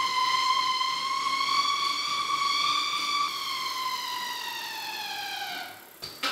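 A Specialized Rockhopper's wheels spinning fast on roller-trainer drums, making a loud, high, steady whine that sounds like a fighter jet. Its pitch climbs a little, then falls away from about halfway as the wheels slow, and it dies out just before the end.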